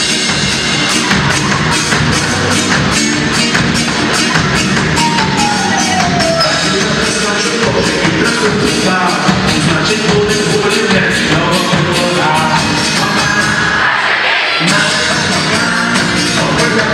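Live pop-rock band playing through a PA in a large mall atrium, drums keeping a steady beat under guitars and keyboards. The low end drops out briefly near the end, then the full band comes back in.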